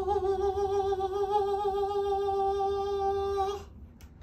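A single voice holding one long sung or hummed note with a slight waver, cutting off sharply a little before the end.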